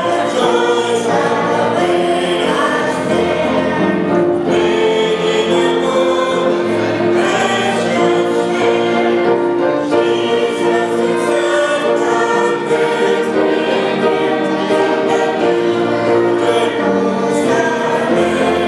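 Small ensemble of violins with piano playing slow music, the notes long and sustained.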